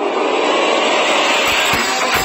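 Background music in a build-up: a dense noisy swell over the music, with low drum hits coming in about one and a half seconds in.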